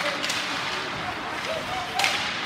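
Ice hockey play in a rink: a steady hiss of skates and arena noise, with two sharp clacks in the first moments and a voice calling out near the end.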